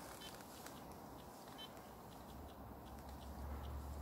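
Faint soft clicks and a few short, high beeps from the buttons of a handheld GPS unit as a waypoint is marked, over a low background hush.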